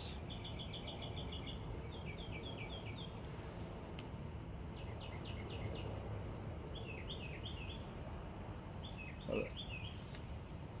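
Small birds chirping in short bursts of quick, high notes, several times, over a steady low background of outdoor noise. A brief low soft sound comes near the end.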